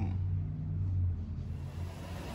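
Steady low engine rumble heard inside a car's cabin. About one and a half seconds in it gives way to a hissier background with a faint high whine.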